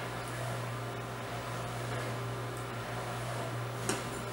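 Steady low hum of room tone, with one small click near the end.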